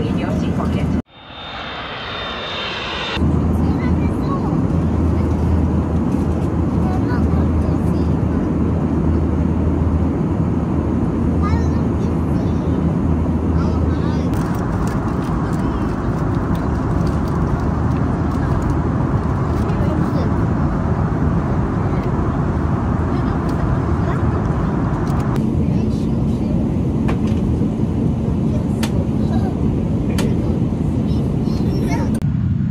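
Steady roar of engine and air noise inside a passenger jet's cabin, with a low hum underneath. It cuts out suddenly about a second in, then swells back over the next two seconds.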